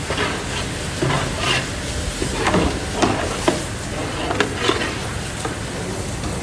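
Chicken pieces sizzling in a large kadai while a long metal ladle stirs them, scraping and knocking against the pan a dozen or so times at uneven intervals.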